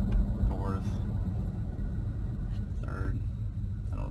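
Low engine and road rumble inside the cab of a Toyota Tacoma with the 3.5 L V6, slowing down with the automatic transmission downshifting from fourth to third. The rumble fades over the second half as the truck loses speed.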